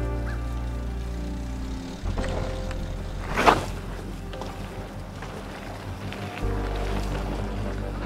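Background music with held low notes. About three and a half seconds in comes a short, loud whoosh of noise, fitting a mountain bike's tyres rushing through a dirt berm.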